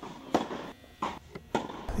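Tennis balls struck by rackets on an indoor court: three sharp pops a little over half a second apart, with a fainter one between the last two.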